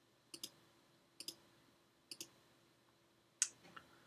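Faint computer mouse clicks: three quick double clicks about a second apart, then a louder single click near the end.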